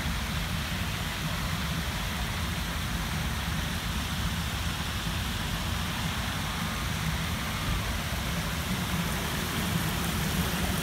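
Water spilling over the low ledges of a tiered fountain in a steady, even rush, with a low rumble underneath.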